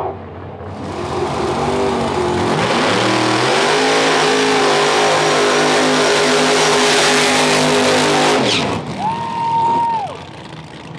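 Small-tire drag car doing a burnout at the starting line: the engine revs up and holds a high, steady pitch under the hiss of spinning rear tires, then cuts back about eight and a half seconds in. A short, steady high whine sounds near the end.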